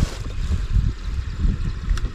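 Wind rumbling unevenly on the microphone over water lapping against a small boat's hull.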